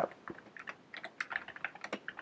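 Computer keyboard being typed on: a quick, irregular run of key clicks as a short line of text is entered.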